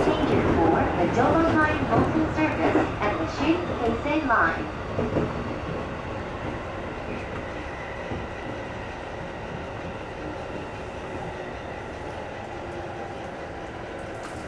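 JR East E531-series electric train running into a station, heard from the cab as a steady rumble of wheels and running gear that grows quieter over the first six seconds as the train slows for its stop, then stays low and even.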